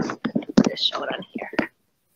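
Indistinct speech: a person's voice talking, with no other clear sound.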